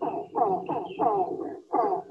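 Recorded calls of the northern rufous hornbill played back over a video call: a run of short calls, two to three a second, each falling in pitch.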